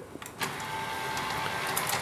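Sanyo VTC5000 Betamax VCR's threading mechanism, a single motor driving the loading ring by one belt, running to unthread the tape after stop is pressed: a steady small-motor whirr with a faint tone, starting about half a second in and slowly getting louder.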